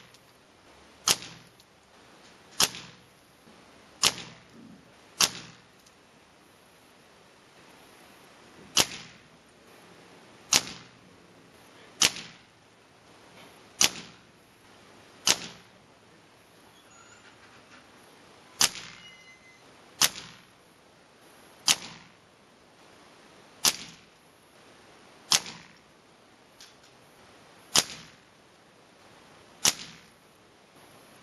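A Benjamin Marauder .25 caliber precharged pneumatic air rifle firing pellets into a paper target: about sixteen sharp cracks, roughly one every one and a half to two seconds, with a pause of about three seconds near the middle.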